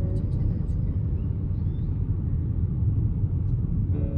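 Steady low rumble of a car driving on an open road, heard from inside the cabin: tyre and engine noise.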